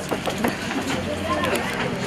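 Background noise inside a crowded tram: an even hiss-like din with scattered light clicks and knocks, and indistinct passengers' voices talking underneath.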